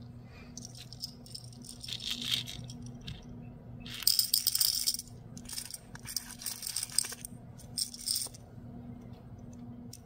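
Rhinestones rattling and clinking against hard plastic as they are tipped from a plastic triangle tray into a small clear plastic jar. The loudest clatter comes about four seconds in, with more bursts of clinking over the next few seconds.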